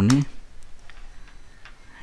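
A man's word trailing off, then a few faint, separate clicks of a computer keyboard in a quiet room.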